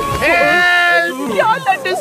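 A cartoon character's voice-acted cry, held for about a second, then short broken vocal sounds.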